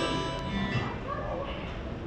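Electronic keyboard chord sounding at the start and fading away, with faint murmuring voices under it.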